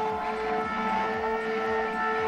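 Othermill Pro desktop CNC mill's spindle running at speed: a steady high whine made of several layered tones.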